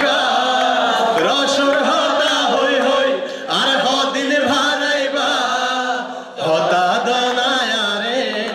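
Men singing a chant-like song together through a microphone and PA, in long phrases with short breaks about three and six seconds in.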